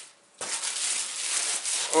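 Clear plastic packaging bag crackling and rustling as a plastic-wrapped jacket is pulled out of a cardboard box, starting about half a second in.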